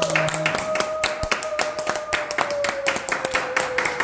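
Audience clapping along in a steady rhythm, about four claps a second, while a long held tone slowly sinks in pitch.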